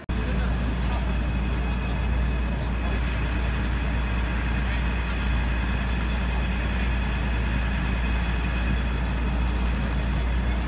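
A loud, steady engine rumble, unchanging throughout, under a crowd talking.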